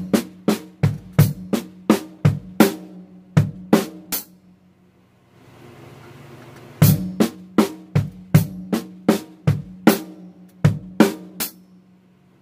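Acoustic drum kit played slowly in a linear pattern, single strokes passing between bass drum, snare and hi-hat at about three a second. It comes in two runs of about four seconds each, with a pause of about two seconds between them.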